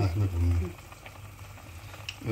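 Pot of soup boiling on the stove: a steady low bubbling, heard plainly after a short spoken bit at the start.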